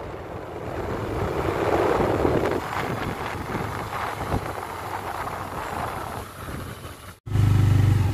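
Riding on a moving motorcycle: wind rushing over the microphone with engine and road noise. Near the end the sound cuts sharply to a louder, steady low engine drone.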